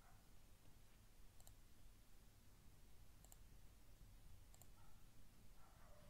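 Near silence with about three faint computer mouse clicks, spaced a second or two apart.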